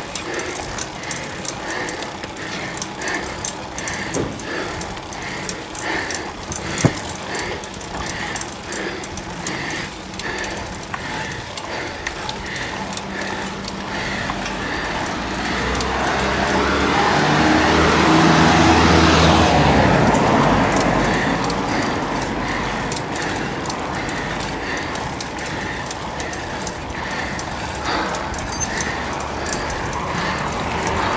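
Steady wind and road noise from a bicycle-mounted camera on a climb, with a faint regular tick about twice a second. A motor car passes, swelling to the loudest point about two-thirds of the way through and then fading.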